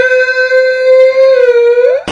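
A singing voice holding one long note on the word "through". The note stays steady, dips slightly and then slides up sharply at the end.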